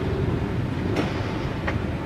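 Steady low rumble of outdoor background noise, with a faint click about a second in.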